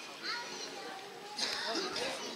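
Children's voices calling and talking in the background of a street, over general outdoor hubbub, louder in the second half.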